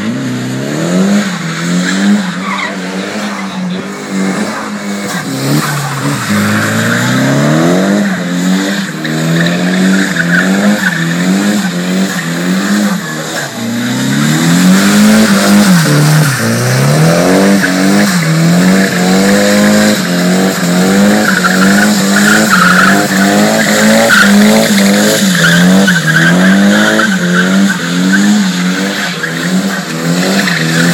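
Car drifting on wet tarmac: its engine revs up and down over and over as the throttle is worked through the slide, with a constant hiss of sliding tyres. It grows louder about halfway through as the car comes nearer.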